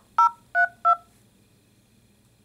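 Smartphone keypad touch-tones: three short two-tone beeps about a third of a second apart, dialled to choose an option in an automated phone menu.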